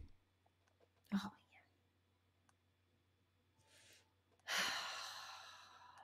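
A near-silent pause holding a short vocal sound about a second in, then a long breathy exhale from about four and a half seconds in that fades away over a second and a half: a person sighing.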